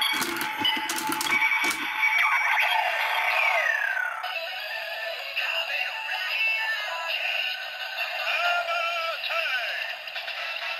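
Kamen Rider Zi-O DX Ziku-Driver toy belt with a Geiz Ridewatch inserted, played through its small built-in speaker. There are a few sharp clicks as it is set and operated in the first two seconds. Then its electronic transformation jingle plays, with the announcer voice calling 'Kamen Rider Geiz!' and, near the end, 'Armour Time!'.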